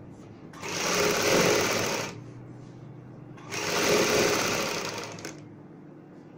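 Sewing machine stitching through fabric in two short runs of about a second and a half each, starting and stopping abruptly with a pause between them.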